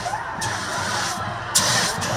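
Crowd noise at a football game, with bursts of hissing from smoke jets as the team runs onto the field; the loudest blast comes in the last half second.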